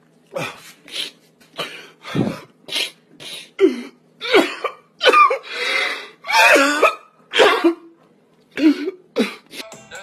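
A man sobbing loudly in a string of short, gasping vocal bursts, with a couple of longer wails in the middle.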